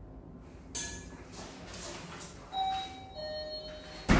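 Hotel room doorbell chiming a two-note ding-dong, a higher tone then a lower one, about two and a half seconds in: someone is at the door, here the porter bringing luggage. A short sharp click comes shortly before.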